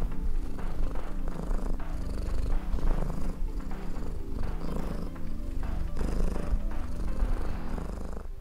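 A domestic cat purring, a steady low rumble, under background music with a regular beat.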